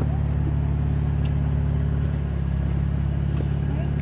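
BMW M4 Convertible's twin-turbo inline-six idling steadily, a low even hum.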